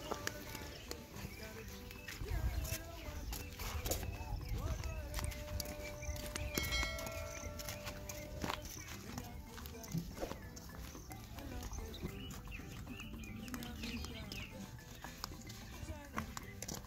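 Flip-flop footsteps clicking on a dirt path as a person walks, over a constant low rumble of wind on the microphone. A held tone sounds for about two seconds near the middle.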